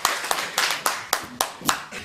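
An audience applauding after a speech, separate hand claps that thin out and die away near the end.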